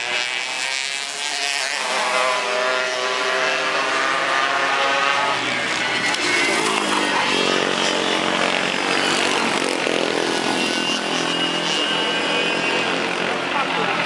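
Racing kart engines buzzing as several karts lap the circuit, the pitch rising and falling as they brake and accelerate through the corners.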